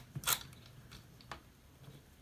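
Light metal clicks and scrapes of a small nut being spun by hand up a chandelier's threaded hanging bolt toward the mounting plate: a few short ticks, the sharpest about a third of a second in and another just past a second.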